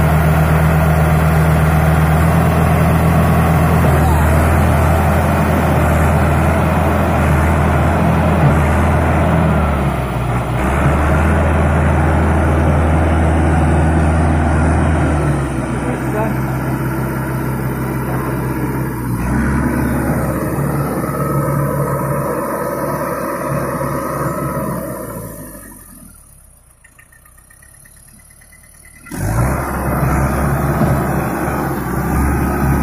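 Mahindra 605 DI tractor's diesel engine working hard as it hauls a trailer through loose soil, its note shifting several times. Near the end the sound drops away for about three seconds, then returns abruptly.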